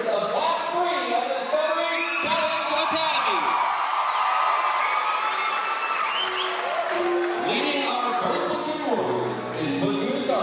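Electronic keyboard playing a song over the chatter and cheers of a large audience in a big hall, with a few held notes near the end.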